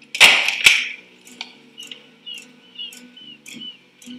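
A door slammed shut: two heavy bangs less than half a second apart, right at the start.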